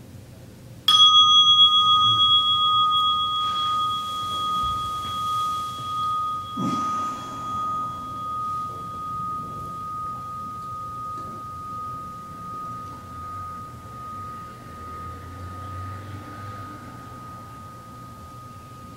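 A meditation bell bowl struck once, about a second in, rings with a long, clear tone that fades slowly, marking the end of the sitting period. A soft knock comes about seven seconds in.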